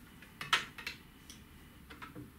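A few light, sharp clicks and taps, the sharpest about half a second in, as a measuring tool, likely calipers, is set against a carbon feeder rod blank to take its diameter.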